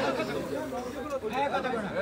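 Chatter of several people's voices at a moderate level, with no single voice standing out.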